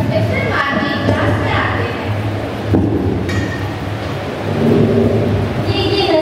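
Children's voices speaking into a microphone in a large hall, heard twice: about a second in and again near the end. A steady low hum runs underneath.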